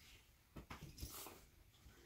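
Faint rustling and rubbing of a towel and bedding as a small wet dog is rubbed dry, with a short run of soft scuffing strokes around the middle.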